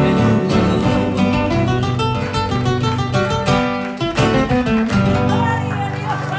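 Two acoustic guitars strumming and picking the closing instrumental bars of a song, with no voice, ending on a final chord that rings on from about five seconds in.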